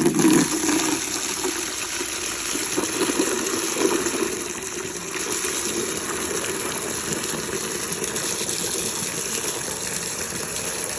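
A stream of water pouring into a plastic bucket, splashing and churning as the bucket fills. The sound is a steady gush, a little louder in the first half-second.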